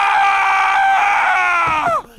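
A man screaming, one long high-pitched scream that holds steady and drops in pitch near the end.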